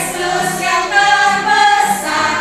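A group of children and adult leaders singing a children's worship song together in unison, with acoustic guitar accompaniment.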